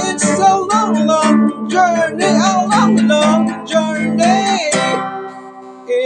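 Band music with strummed guitar chords and a wavering melody line riding over them. The strumming stops about five seconds in, leaving a held tone that fades.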